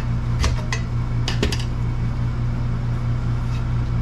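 Steady low mechanical hum, with a few light metallic clicks and clinks in the first second and a half as steel suspension parts are handled on a metal workbench.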